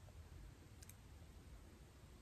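Near silence: faint room tone, with one soft click a little under a second in.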